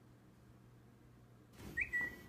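Faint room tone, then near the end a short high-pitched whistle-like tone that rises briefly and is held, with a short rustle around it.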